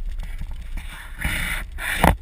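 Wind rumbling on the microphone, with a short scraping hiss a little after a second in and a sharp knock right at the end.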